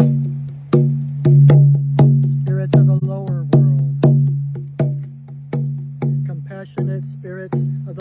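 Moose-hide frame drum struck with a padded beater in a steady beat of about three strokes every two seconds, each stroke leaving a low ringing hum. A man's voice chants between the beats.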